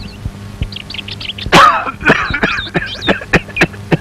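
An elderly man coughing and groaning in a run of short, harsh bursts, beginning loudly about one and a half seconds in. Faint bird chirps come before the coughing starts.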